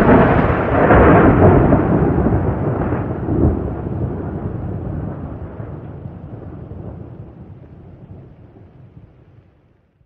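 A thunder rumble sound effect: loud swells in the first few seconds, then a long rolling fade to silence.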